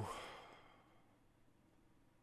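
A man's breathy sigh, an exhale that fades away within about half a second, followed by near silence.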